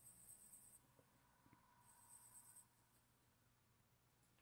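Faint scratching of a 2B graphite pencil on paper as small circles are drawn: two brief spells of strokes, one at the start and one about two seconds in.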